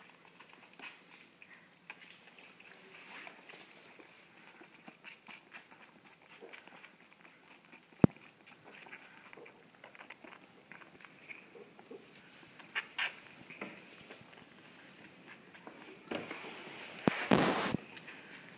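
Lamb sucking milk from a feeding bottle's teat: soft, irregular sucking and smacking clicks, with one sharp click about eight seconds in and a louder burst of noise near the end.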